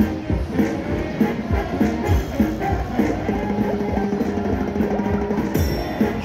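Gold Fish slot machine playing its bonus-round music: a melody over a steady drum beat.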